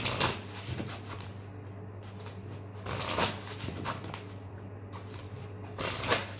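A deck of oracle cards being shuffled by hand, in short bursts: one right at the start, one about three seconds in and one near the end. A low steady hum runs underneath.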